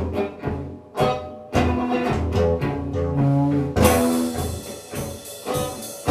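Live band playing an instrumental passage with no vocals: electric guitar over a low bass line and drums. A bright cymbal wash comes in about four seconds in.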